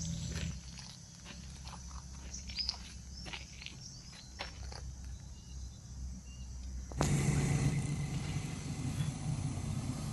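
Quiet outdoor ambience with scattered rustles and a few short high chirps. About seven seconds in, an abrupt cut brings a louder, steady rumbling noise beside a road.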